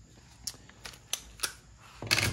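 A handful of short, light clicks and taps, about five in two seconds, from a cordless driver and hard plastic parts being handled on a workbench.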